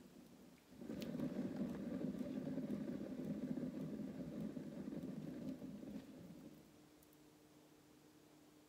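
A spinning turntable under a freshly poured acrylic canvas: a steady low rumbling whir starts about a second in, holds, and dies away near the end as the spin stops. The spin flings the excess paint out over the edges.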